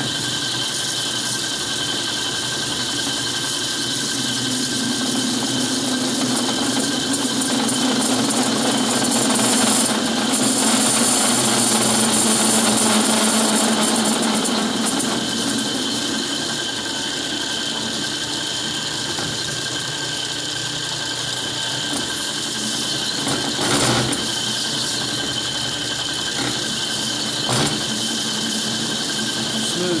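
Metal lathe running steadily with its gear whine while the cutting tool trims the edge of a large spinning metal disc, the cut getting louder for a few seconds near the middle. Two short knocks come near the end.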